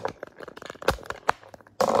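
Handling noise from a phone being pushed and adjusted in its mount: scattered light clicks and knocks, with one heavier thump about a second in.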